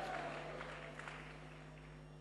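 The amplified voice of a preacher dying away in echo, leaving faint crowd noise and a steady electrical hum from the sound system.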